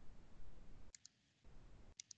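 Computer mouse double-clicked twice, faint: two quick clicks about a second in and two more at the end, as folders and a file are opened. A low rumbling microphone background runs underneath and cuts out around each double-click.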